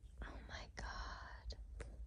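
A person whispering softly, with a few faint clicks.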